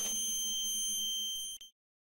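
Flashbang ear-ringing sound effect: a steady high-pitched ringing made of several tones at once over a faint low hum, left after the blast. It cuts off suddenly about one and a half seconds in.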